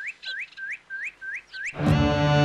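A small bird chirping in a steady run of short rising chirps, about three a second. Near the end music comes in with a rising sweep and takes over loudly.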